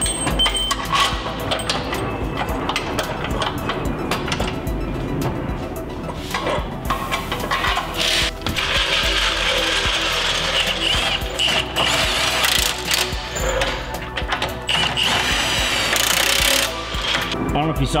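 Cordless impact wrench running in several bursts of a second or two, tightening the bolts of a bolt-on front subframe traction bar, over background music.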